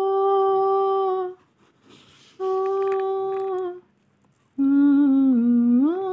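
A woman's voice humming three long held notes with short gaps between. The first two are on the same pitch; the third is lower and slides upward at its end.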